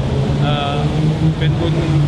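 Steady low drone of vehicle engines holding one pitch, under a man speaking Thai.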